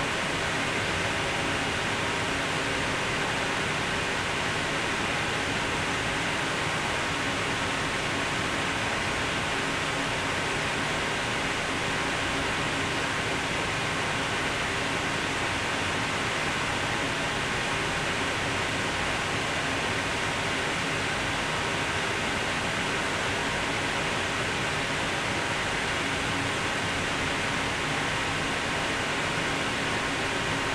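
Steady hiss and hum of running lab equipment, even throughout, with a faint steady high whine.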